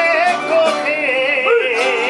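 A man singing a Spanish folk song, holding a long ornamented line with a strong wavering vibrato, over steady chords from plucked strings.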